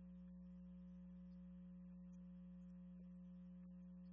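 Near silence: room tone carrying a steady, unchanging low hum.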